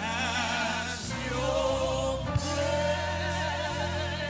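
Live gospel worship singing: lead and backing voices holding long, wavering notes over steady, sustained low accompaniment, with one brief knock a little past halfway.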